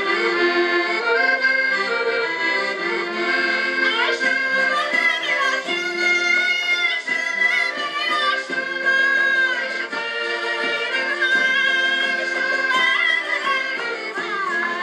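Portuguese folk music playing a chula, led by accordion, with voices singing high from about four seconds in.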